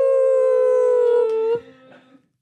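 Two voices holding one long 'woooo' cheer together, the pitch falling slightly, until it cuts off about one and a half seconds in.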